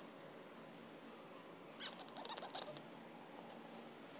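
A dog whimpering faintly: a soft click, then a few short, thin, squeaky whines about two seconds in.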